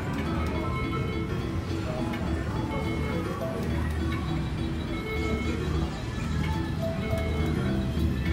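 Electronic chime tones from a Cleopatra Keno video keno machine as it draws its numbers, over a steady wash of electronic gaming-machine music.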